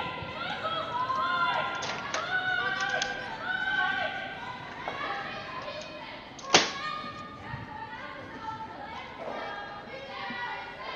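Curlers talking on the ice in an echoing rink, with a single sharp knock about six and a half seconds in.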